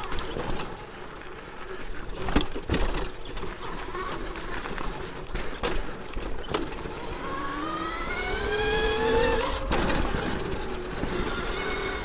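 Throne Srpnt electric dirt bike's motor whining, its pitch rising between about seven and ten seconds as it speeds up, then holding. Underneath are a steady rush of tyre and wind noise on the dirt trail and a few sharp knocks from the bike over rough ground.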